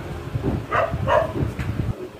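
A dog barking twice in the background over a low rumble that cuts off near the end.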